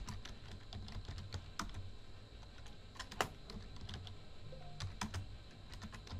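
Computer keyboard typing: irregular, faint keystrokes, a few louder than the rest, as a short phrase is typed.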